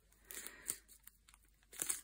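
Small plastic resealable bag of diamond-painting drills crinkling faintly as it is handled and pressed shut, a few brief rustles.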